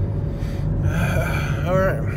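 Steady low rumble of a car's interior while driving, with a short vocal exclamation from a man near the end.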